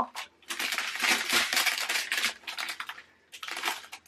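Small clear plastic zip bags of diamond painting drills crinkling and rustling as a joined strip of them is handled, in uneven bursts with brief pauses.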